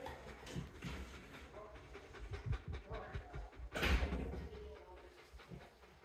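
Large white livestock guardian dog panting with her mouth open, in short uneven breaths, with low thuds; one loud, sharp burst comes just before four seconds in, then it fades.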